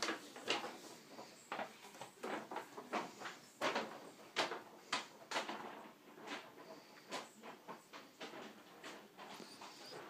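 Irregular soft knocks, clicks and rustles of someone moving about a room and handling things while tidying, one or two a second.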